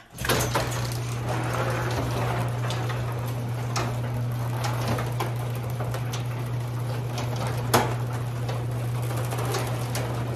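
Electric garage door opener raising a sectional overhead door: a steady motor hum with the rattle and clicks of the door's rollers in their steel tracks, starting abruptly and running evenly, with one sharper click near the end.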